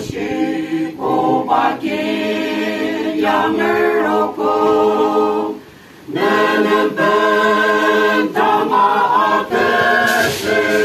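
A small mixed choir of men and women singing unaccompanied, with a short break in the singing about halfway through.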